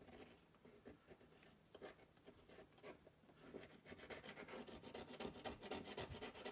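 Small screwdriver scraping leftover glue off a thin metal LCD frame: faint, quick scratching strokes that grow busier and louder over the second half.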